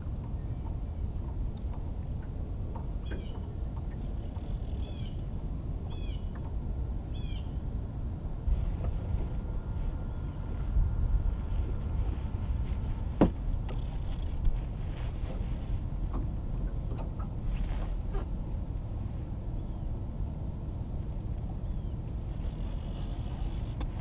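Low rumbling wind and water noise around a small anchored fishing boat, with a few short high chirps in the first third and a single sharp click about halfway through.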